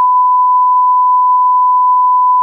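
Censor bleep: one loud, steady beep at a single unchanging pitch, blanking out the spoken name of the shoe.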